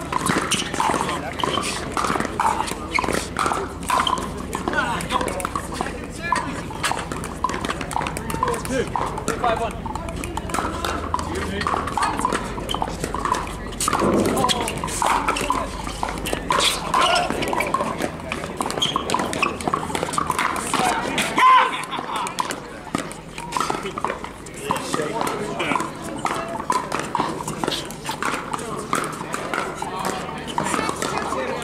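Pickleball paddles striking the hard plastic ball in repeated sharp pops, from this rally and the neighbouring courts, with one louder pop a little past two-thirds of the way through. Voices of players and onlookers run underneath.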